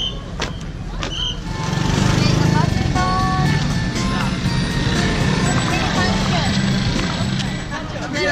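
Sharp regular beats, about two a second, with short high tones for the first second and a half. Then the steady, loud running of motorbike engines close by takes over, with a brief pitched tone like a horn around the middle.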